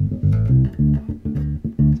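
Electric bass guitar played through an EBS MicroBass II preamp: a steady line of short plucked low notes, about four a second.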